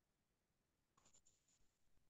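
Near silence: room tone, with a short run of faint, sharp high-pitched clicks about a second in.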